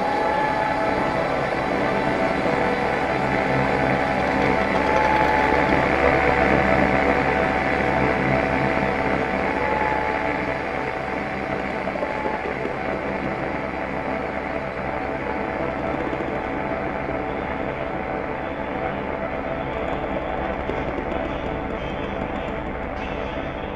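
Experimental improvised ambient music from a live ensemble of guitar, laptops, samplers, zither and synth: layered sustained drones with many held tones over a low hum, swelling for the first few seconds and then easing off slightly.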